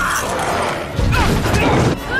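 Movie sound effects of a robotic combat exosuit's mechanisms whirring and clanking as a large creature attacks it, with a sudden heavy impact about a second in. Short high gliding sounds run through the mix.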